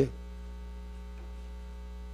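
Steady electrical mains hum, a low constant drone with a fainter overtone above it.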